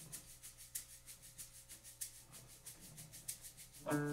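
Handheld shaker played softly in a steady rhythm, about four shakes a second. Just before the end, a sustained pitched instrument chord comes in as the song begins.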